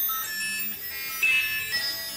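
Eerie electronic space sound from a sonified Jupiter moon, played back through a screen's speakers: scattered held beeping tones at shifting pitches, starting and stopping out of step, like a very broken piano.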